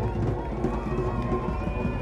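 A live band playing a groove on electric guitar, bass and drums, with a voice over the music.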